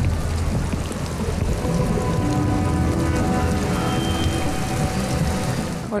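An animated episode's soundtrack: a dense, steady noisy ambience with a low rumble, joined about a second and a half in by held music notes.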